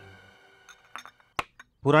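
Glass soft-drink bottles clinking in a crate: a few faint clinks, then one sharp clink about one and a half seconds in.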